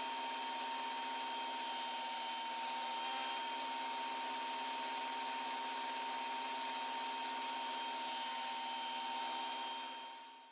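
Table saw running at steady speed, its blade spinning free with a constant whine. The sound fades out near the end.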